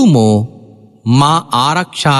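A Buddhist monk's voice reciting in a slow, chant-like cadence: one long syllable falling in pitch, a pause of about half a second, then a run of short syllables.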